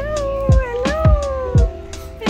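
A high-pitched, drawn-out, wavering voice cooing "hello" to a puppy, over background music with a steady beat.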